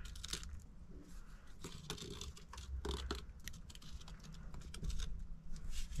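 Quiet, irregular clicks and short scratchy scrapes of a hand tool and handling against the rock of a mine tunnel wall.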